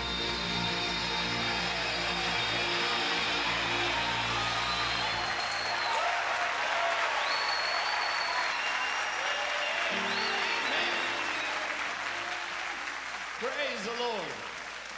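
A gospel band's closing chord of piano and guitar ringing out and fading about five seconds in, while a large audience applauds. The applause carries on after the music stops, and a man's voice comes in near the end.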